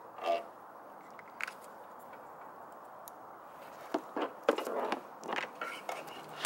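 Handling noise from a Jeep Wrangler's tail-light wiring harness being pulled out through the empty tail-light opening: scattered clicks, with a cluster of sharp clicks and scrapes of the plastic plug and body panel in the last two seconds, over a steady hiss. A brief pitched sound comes about a third of a second in.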